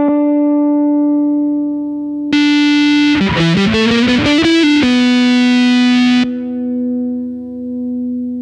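Electric guitar through a Keeley Octa Psi pedal. A held note with the octave-down voice gives way, about two seconds in, to a bright, heavily distorted fuzz passage of several notes. The fuzz cuts off suddenly about six seconds in, leaving a softer held note.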